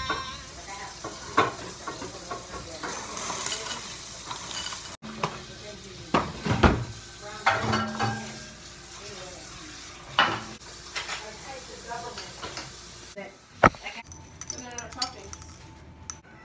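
Dishes and utensils being handled in a kitchen: scattered clinks and knocks of bowls and a spoon, with a steady hiss in the first few seconds.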